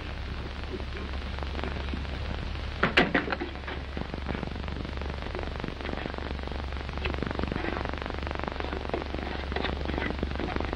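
Old optical film soundtrack noise: a steady low hum under hiss and crackle, with a short burst of clattering knocks about three seconds in.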